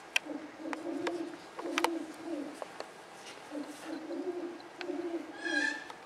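Dove cooing in a series of low, short phrases, each about half a second long, with a few light knocks between them and a brief higher squeak near the end.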